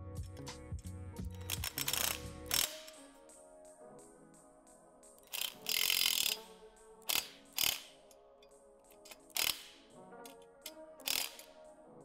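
Cordless drill-driver driving bolts into a metal bench frame. It runs steadily for the first couple of seconds, then in short bursts, the longest about six seconds in.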